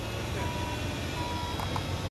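Vehicle backup alarm beeping, a little more than one beep a second, over the low rumble of a large diesel tractor engine idling.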